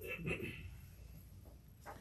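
A short pause in a man's recitation: the end of a word fades in the first half-second, then faint room tone, with a brief breath shortly before he speaks again.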